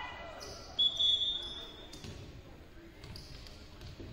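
A referee's whistle blown once for about a second, followed by a couple of dull thuds of a volleyball being bounced on the hardwood gym floor before the serve.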